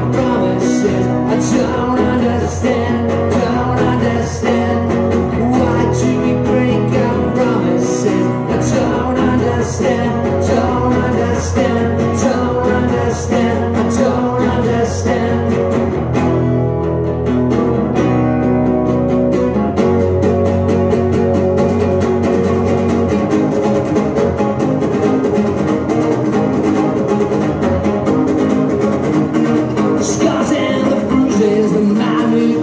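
Two acoustic guitars strummed together in a live rock song, with a steady rhythm. The sound thins out briefly about sixteen seconds in, then comes back with denser, busier strumming.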